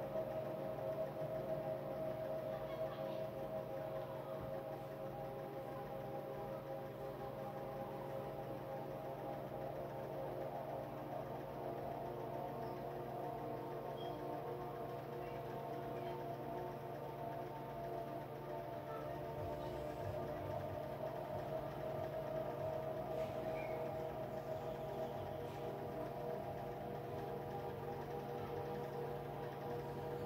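Ambient meditation music of steady, sustained drone tones that hold unchanged throughout.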